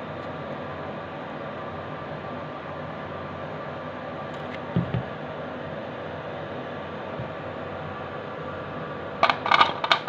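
Peeled garlic cloves dropping and clattering into a clear plastic chopper bowl, a quick run of sharp clicks near the end, over a steady background hum. Two soft low thumps come about halfway through.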